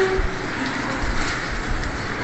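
Steady rustling of a black plastic gift wrapping as a ribbon is untied and the package is opened by hand.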